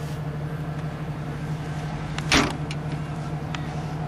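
Jeep Cherokee's rear tailgate being shut, one brief loud sound a little past halfway, over a steady low hum.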